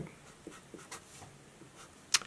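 Felt-tip Sharpie marker drawing on paper: a few faint, short strokes and scratches.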